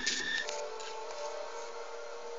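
A film soundtrack playing faintly through computer speakers and picked up by a phone. A brief noisy swish at the start gives way to sustained held tones over hiss.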